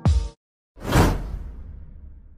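Intro music ends on a last beat, then after a short gap a whoosh sound effect swells up, peaks about a second in and fades away.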